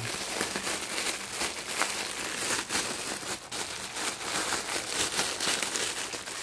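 Clear plastic packaging bag crinkling and rustling as hands turn over and squeeze a small shoulder bag sealed inside it, a continuous run of small crackles.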